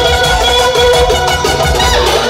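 Live folk dance music: a clarinet playing the lead melody over electronic keyboard accompaniment with bass and a beat.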